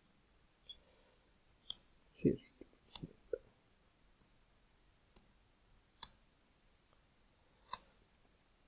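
Computer keyboard keys pressed one at a time: faint separate sharp clicks, about six spread over several seconds.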